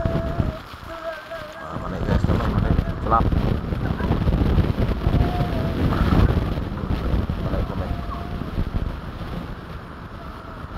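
Wind rumbling on the microphone, with short calls from distant voices now and then.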